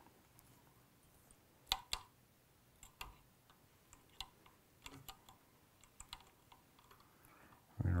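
Scattered light clicks and ticks of hands handling lead wire and tying tools at a fly-tying vise, the two sharpest a little under two seconds in.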